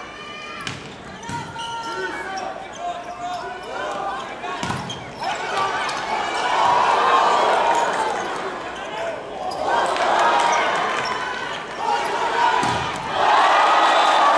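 Volleyball rally in an arena: a few sharp thumps of the ball being struck, the hardest about a third of the way in and again near the end, over players' shouts and crowd noise. The crowd swells several times and rises to cheering as the rally ends.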